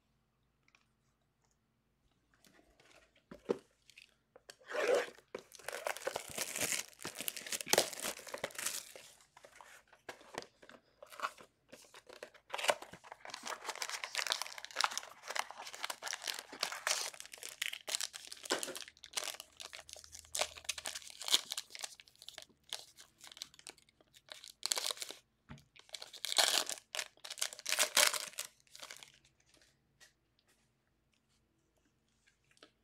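Plastic wrap torn off and crinkled as a sealed Obsidian Soccer card box is opened and handled, in irregular stretches of rustling and crackling with sharp clicks. It starts a few seconds in, with short pauses around ten seconds and near the end.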